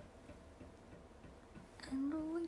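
Quiet room tone with faint light ticks, and a brief soft noise just before the end.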